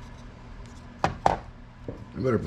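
Two sharp knocks close together about a second in, and a fainter one near the end, as things are handled and set down on a rod-wrapping stand, over low room tone.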